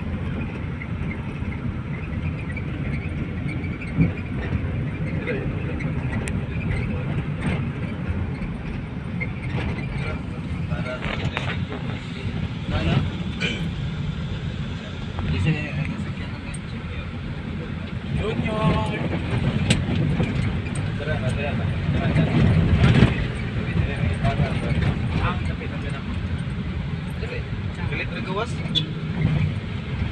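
Road and engine noise inside a moving passenger van's cabin, a steady low rumble, with passengers talking in the background.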